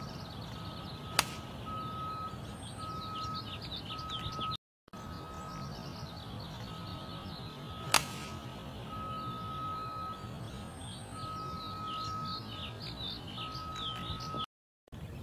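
Two sharp cracks of a driver striking a teed golf ball, one about a second in and one about eight seconds in. Behind them birds chirp and a steady high whistle comes and goes in repeated dashes.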